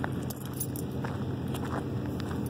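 Light metallic jingling and clinking that comes and goes with walking steps, over a steady low rumble.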